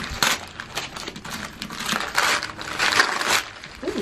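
Gift wrapping paper being torn and crumpled by hand as a present is unwrapped, in irregular bursts of crinkling and rustling.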